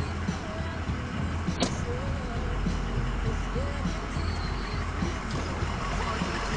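Ford F-350 pickup's engine idling steadily, heard from inside the cab while the truck stands still, with a single sharp click about one and a half seconds in.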